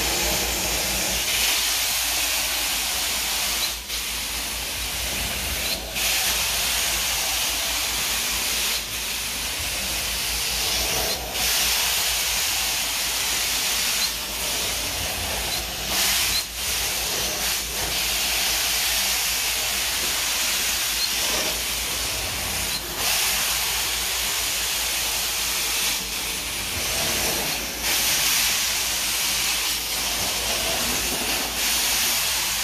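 Carpet-extraction wand on an Everest 650 extractor, spraying and vacuuming across carpet tiles: a steady high hiss of suction and spray, broken by brief dips every two to three seconds as the strokes change.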